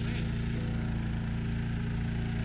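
Engine running steadily at a constant speed, powering the equipment that moves spent brewing grain into a tank trailer.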